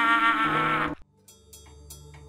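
A boy's long, held scream that cuts off abruptly about a second in. After a short silence, faint music starts.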